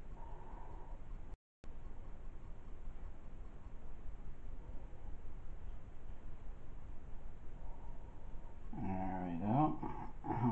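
A thin stream of water trickling steadily as it is poured off the top of a jar of settled black slurry. Near the end come two short whining calls whose pitch bends up and down.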